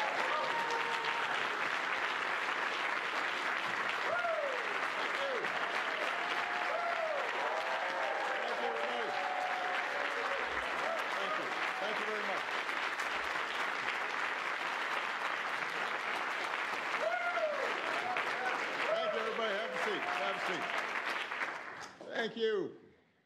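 Audience applauding steadily, with scattered cheers and whoops over the clapping; it dies away near the end.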